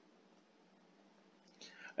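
Near silence with faint recording hiss, then a faint breathy sound from the lecturer near the end, just before his speech resumes.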